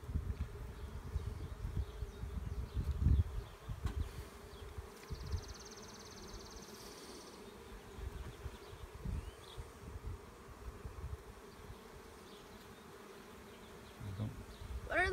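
Honey bees buzzing around an open hive as a brood frame is lifted out, a steady hum throughout. Low rumbles come through in the first few seconds.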